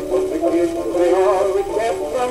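Music from a 1924 Victor 78 rpm shellac record playing on a turntable. It is an old acoustic-era recording with a single wavering melody line in the mid range and little bass.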